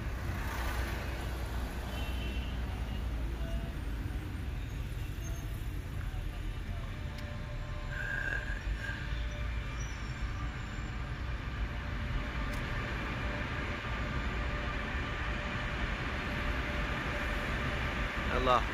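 Steady low rumble of tyres and engine heard inside a moving car's cabin, the car driving on into a road tunnel in the second half.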